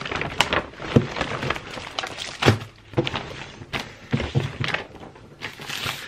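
A glossy plastic carrier bag and paper being handled: irregular crinkling and rustling with scattered sharp clicks and light knocks.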